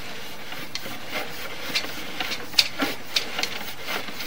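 Sewer inspection camera's push cable being fed into the pipe, rubbing with a steady hiss and scattered light clicks.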